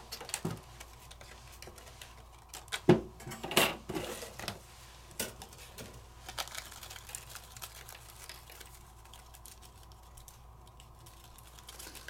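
Light handling of die-cut black cardstock and a thin metal cutting die: scattered taps, clicks and paper rustles as the cut paper is pulled off the die and separated, loudest about three to four seconds in.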